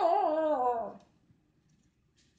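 A husky giving one wavering, talkative howl-like call, about a second long, that drops in pitch at the end.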